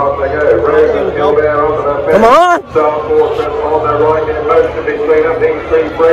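Racecourse public-address commentary on a horse race in progress, a man's voice calling the race without pause. A little after two seconds in, a loud shout rises and falls in pitch over it.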